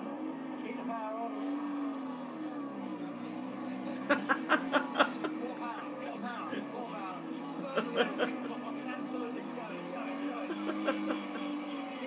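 A small trials car's engine drones as it labours up a grassy slope, wavering in pitch. Men laugh in short bursts about four seconds in and again near eight seconds. It is heard through a television speaker.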